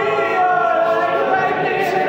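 All-male a cappella group singing, a lead singer at the microphone over the rest of the group's sustained backing voices, with no instruments.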